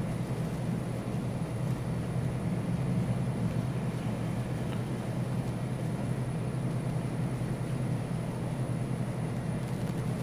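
A steady low mechanical hum, even in level, with a faint thin high whine above it.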